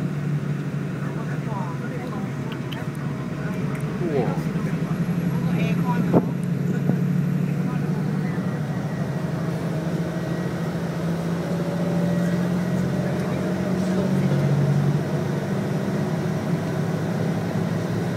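Steady low drone of a tour coach's engine and road noise, heard from inside the passenger cabin while it drives along. A single sharp knock sounds about six seconds in.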